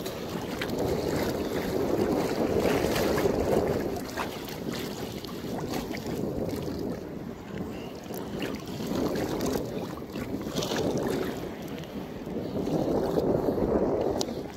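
Wind buffeting the microphone over choppy shallow sea water washing and sloshing, swelling louder and softer every few seconds.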